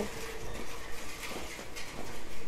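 Low outdoor background noise with a faint steady hum, and no distinct event.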